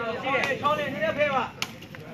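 Sepak takraw ball kicked during a rally: two sharp cracks, about half a second in and again near the end. Men's voices call out over the first part.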